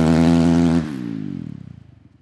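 Motocross bikes' engines at high revs as the pack pulls away from the start gate. The note holds steady, then drops in pitch and fades away during the second half.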